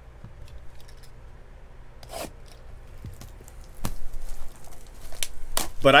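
Clear plastic wrapper on a trading-card pack being torn open and crinkled, with a few sharp clicks and rustles that get busier from about four seconds in.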